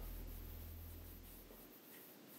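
Faint low drone of the background score fading out over the first second and a half, leaving near silence with faint room tone.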